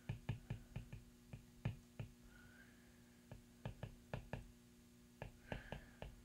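Faint, irregular clicks and taps of a stylus writing on a tablet's glass screen, in short runs with a lull a couple of seconds in.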